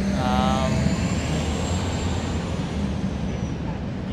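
Street traffic: vehicle engines running steadily, with a faint high whine that rises and then falls away over about three and a half seconds.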